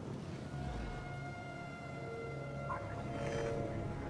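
Quiet, ominous film score with long held tones over a low drone. Near the end a droid gives a brief electronic warble.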